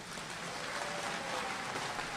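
An audience clapping steadily in a hall during a pause in a speech.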